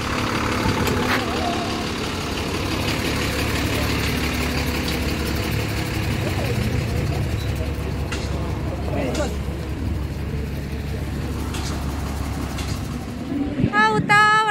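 Tata army truck's diesel engine running close by, a steady low rumble that fades near the end, with faint voices over it.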